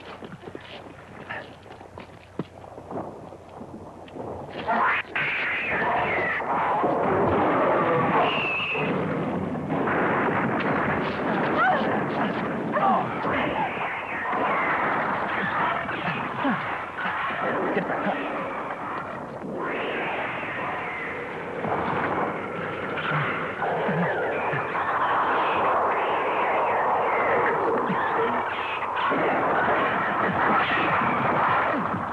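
Loud, dense sound-effect noise with rumbling and bangs, starting about five seconds in after a quieter stretch of scattered clicks.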